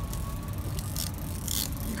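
Boat motor running steadily at trolling speed, a low rumble, with brief hissing bursts about halfway and again near the end.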